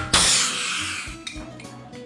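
Pop rivet gun setting an aluminium LP4-3 pop rivet through a wedge: a sharp burst as it fires, then a hiss that fades over about a second.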